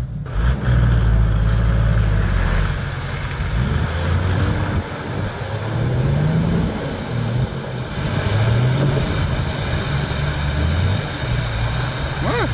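A 4x4's engine revving as it drives off through deep mud and flowing floodwater. The engine note is loudest at first, then rises in pitch a few times as the driver keeps the speed up.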